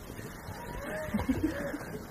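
Faint, indistinct voices heard away from the microphone, with a few soft low bumps from the table microphone being handled.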